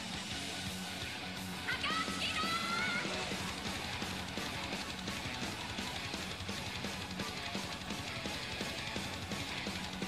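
Live heavy metal band music with electric guitars, steady and dense, with a brief high melodic phrase about two seconds in.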